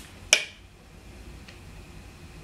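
One short, sharp spritz from a fragrance mist pump spray bottle about a third of a second in, then quiet room tone.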